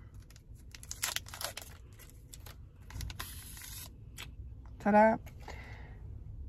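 Sealed wrapper of a nasal test swab being torn open and peeled back to pull the swab out: light crinkling and clicks, then a rasping tear about three seconds in.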